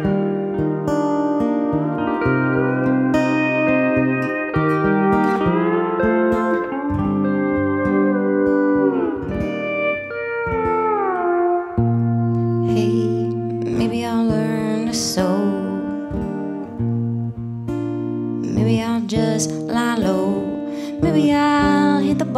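Pedal steel guitar playing an instrumental solo of sustained notes with smooth sliding bends up and down, over acoustic guitar accompaniment.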